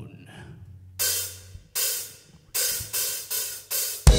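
Rock drummer counting the band into the next song on the cymbals: six short hits, two slow and then four quicker, each ringing briefly.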